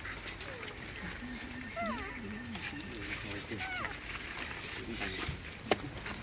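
Faint voices talking, with a few short, high squeaky calls that slide in pitch, and a single sharp click near the end.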